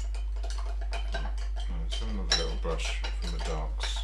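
Small clinks and scrapes of oil-painting tools against glass as the painter works at his palette, with one sharper click a little past halfway.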